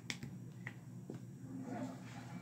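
Two or three sharp clicks of fingers tapping and handling a paper sheet on a tabletop.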